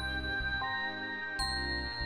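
Slow background music: sustained tones over a low pad, with a bell-like chime note struck about one and a half seconds in and left ringing.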